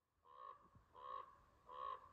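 Crow cawing, three faint caws about two-thirds of a second apart.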